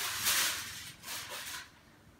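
Aluminium foil over a baking dish rustling and crinkling in a couple of soft hissy bursts, fading away toward the end.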